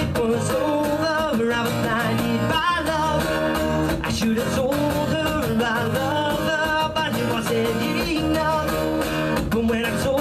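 A man singing a song to his own strummed acoustic guitar, the voice carrying a gliding melody over steady strums.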